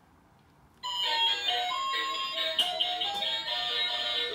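A musical toy doll's built-in speaker, set off by pressing the button on its chest, starts playing an electronic melody abruptly about a second in; the melody then plays on steadily.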